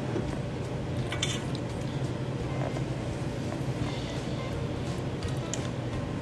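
Soft background music at a steady level, with one brief clink of the serving spoon against the pot about a second in.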